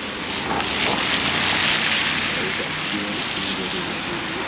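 Steady hiss of car tyres on a wet, slushy street, swelling about a second in and easing off toward the end.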